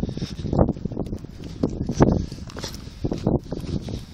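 Footsteps on dirt and concrete: a handful of uneven steps, with the scuffs and crunches of someone walking.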